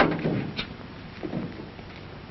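A few short knocks and thumps: the loudest right at the start, a lighter one about half a second in, and two softer ones just over a second in.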